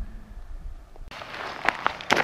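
A low rumble on the microphone for about the first second. Then footsteps through grass and dirt, with a hiss and a few sharp clicks near the end.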